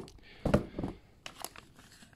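Plastic parts packaging crinkling and rustling as it is handled, in a few short rustles about half a second and about one and a half seconds in.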